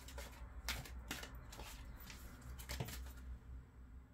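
Tarot cards shuffled by hand: a quick, irregular run of soft card slaps and slides that thins out near the end.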